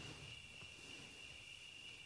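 Faint steady trilling of crickets, one unbroken high tone, in an otherwise near-silent pause.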